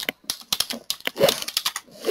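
Typing on a computer keyboard: a quick run of key clicks as a word is typed, about eight keystrokes.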